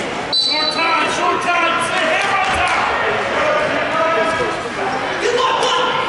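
Overlapping voices of coaches and spectators calling out, echoing in a large gymnasium during wrestling matches. A brief high steady tone sounds about a third of a second in, and a dull thump about halfway through.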